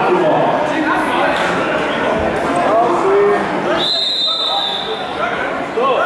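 Referee's whistle blown once, a steady high blast about four seconds in lasting about a second, stopping the action on the mat. It sounds over constant crowd chatter echoing in a large sports hall.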